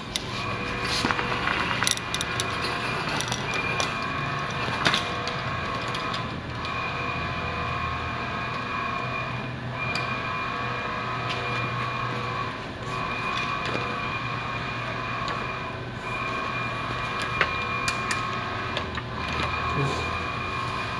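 Steady machinery hum made of several tones, easing off briefly about every three seconds, with a few light clicks and rustles as a vinyl retractable banner is pulled up and handled.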